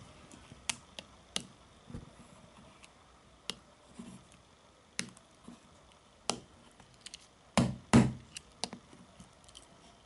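Swiss army knife blade tapping and scraping against the glass touchscreen of a Sony Ericsson Xperia Active phone: irregular short, sharp clicks, the two loudest, slightly longer scrapes about eight seconds in.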